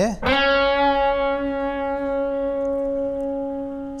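Electric guitar sounding a single note, the root C# that ends a C-sharp-minor lick. It is picked about a quarter second in and rings for over three seconds, fading slowly.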